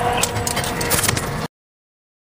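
Fire truck running, heard from inside the cab, with several sharp clicks and knocks over the noise. The sound cuts off suddenly about one and a half seconds in.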